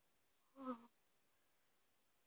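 Near silence: room tone, broken once by a short, falling "oh" from a woman's voice about half a second in.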